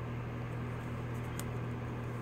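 Steady low hum with a faint even hiss: room tone. One faint tick a little past halfway.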